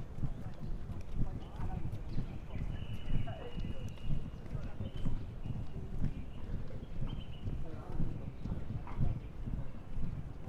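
Footsteps walking on an asphalt path, an even pace of about two steps a second.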